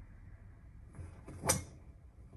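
A golf driver striking a ball: one sharp crack about three-quarters of the way through.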